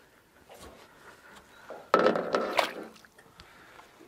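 A splash as a released flathead is let go and kicks away into the water, a single rush of water about halfway through that fades within about a second.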